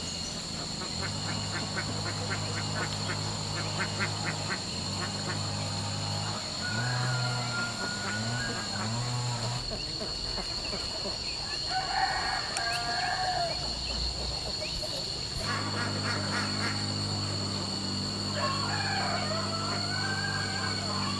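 White domestic ducks quacking repeatedly, in runs of short calls with pauses between.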